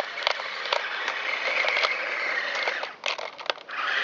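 Heng Long 1/24 RC tank's small electric drive motors and gearboxes whining as it drives over dirt, with light clicking from the plastic tracks; the whine drops out briefly about three seconds in. The motors are running slowed, fed through voltage-dropping diodes.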